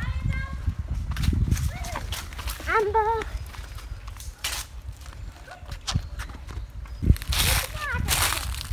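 Footsteps of someone walking with the camera, over a concrete path and then grass, with a steady low rumble on the microphone. A short, high, wavering call sounds about three seconds in, and a shorter one at the start.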